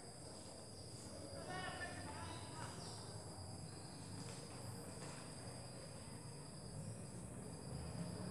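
Faint, steady high-pitched trilling of crickets, with faint scratching of a pencil drawing on paper.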